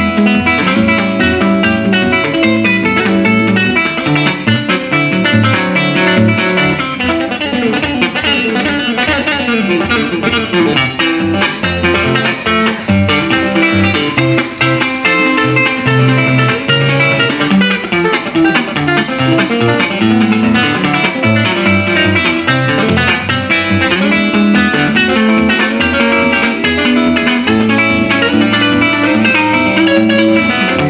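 Solo electric guitar, a refretted 1965 Fender Jaguar, played fingerstyle through an amplifier: picked bass notes run steadily under a melody on the higher strings.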